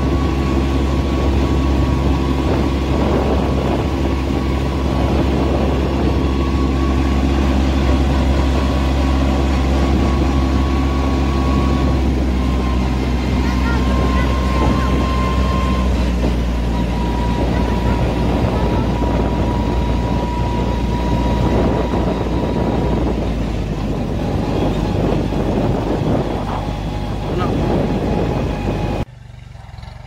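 Kubota B2441 compact tractor's three-cylinder diesel engine running on the road, heard close from the driver's seat, with a thin steady whine above the engine note. The engine note drops a little about halfway through, and the sound falls off sharply near the end.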